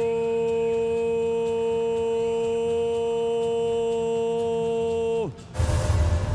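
A ring announcer's voice over the arena PA, holding one long steady note as he draws out a fighter's name, then falling in pitch and breaking off about five seconds in. A loud burst of noise follows just before the end.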